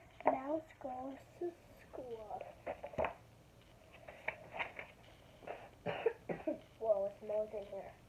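A child's voice speaking softly in short, indistinct snatches, with a few brief, sharp noises in between.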